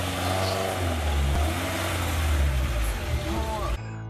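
A car's engine and tyres with a steady low rumble as the car pulls away, with faint voices under it. The sound cuts off suddenly near the end and guitar music starts.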